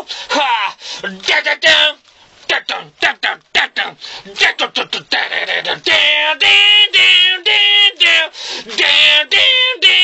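A man's voice imitating a metal song unaccompanied. For the first few seconds there are short, clipped percussive pops and clicks, then from about six seconds in a run of buzzy sung notes in a chopped rhythm that mimics the guitar riff.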